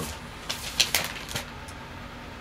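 Record sleeves being handled: a few short rustles and light clicks of cardboard and plastic from about half a second to a second and a half in.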